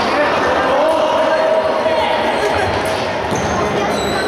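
Futsal ball being kicked and bouncing on an indoor court, the thuds ringing in a large hall over a steady din of players' and spectators' voices.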